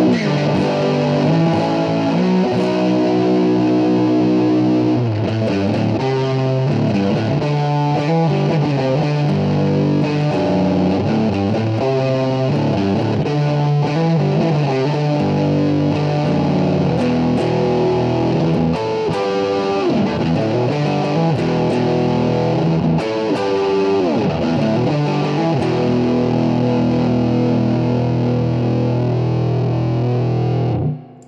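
Distorted electric guitar playing a rock riff, a Harley Benton JA-60 on its Seymour Duncan Quarter Pound bridge pickup driven through a Tech 21 American Woman fuzz pedal into a Boss Katana-Air mini amp. Held chords and runs are broken by a few sliding notes.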